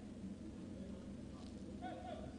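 Faint pitch ambience at a football match with no crowd: a steady low hum with distant shouts from players.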